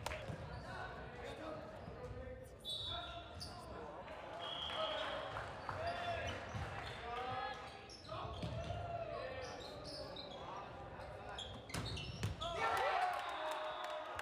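Volleyball rally in a gymnasium: sharp hits of the ball, with a louder cluster of hits about twelve seconds in, and players shouting and calling to each other throughout.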